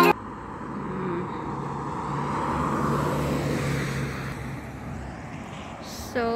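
A car passing on the road. Its tyre and engine noise swells to a peak about halfway through, then fades away.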